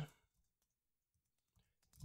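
Faint computer keyboard typing: a scattered run of soft key clicks, close to silence.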